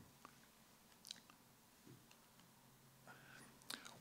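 Near silence: room tone in a pause of a talk, with a few faint clicks.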